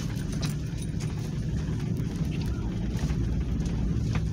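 Toyota Land Cruiser driving slowly, a steady low rumble heard from inside the cabin, with a few scattered light clicks.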